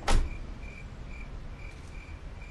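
Crickets chirping at a steady pace, about two chirps a second, over a low rumble. Just after the start, a single sharp, loud hit dies away within a moment.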